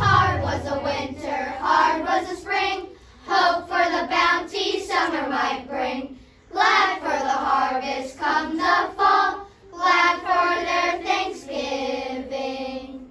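Children's choir singing in phrases with short breaths between them. The low notes of the accompaniment stop about a second in, leaving the voices nearly alone.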